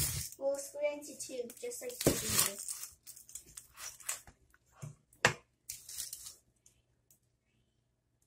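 Kitchen knife cutting a whole onion in half on a wooden cutting board: a crisp crunch as the blade goes through the skin and layers, then a few short sharp knocks, the loudest about five seconds in, as the blade meets the board.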